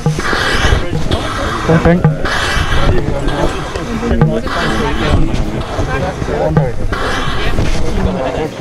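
Rustling and knocking of clothing and rescue gear right against a body-worn camera as a team handles a casualty on a stretcher, with loud rushes of noise about every two seconds over a low rumble.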